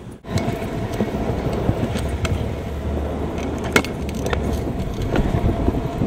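Small hard scooter or skateboard wheels rolling over concrete pavement: a steady rumble that starts abruptly a moment in, with a few sharp clicks along the way.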